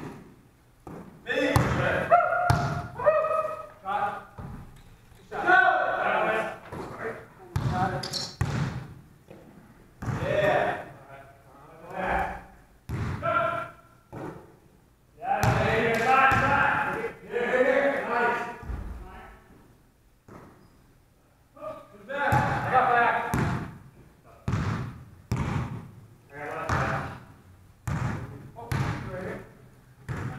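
A basketball bouncing on a hardwood gym floor in repeated short thuds, with players' voices calling out between and over the bounces, in a large echoing hall.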